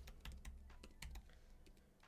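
Faint typing on a computer keyboard: a handful of separate keystrokes as a word of code is finished and a new line is started.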